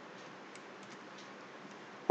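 A few faint computer mouse and keyboard clicks over a low steady hiss, as text is copied and pasted into a new notebook cell.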